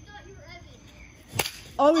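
A yellow plastic wiffle ball bat strikes a wiffle ball once, a single sharp crack about one and a half seconds in: the ball is hit hard ("crushed it"). Loud shouting voices follow right after it.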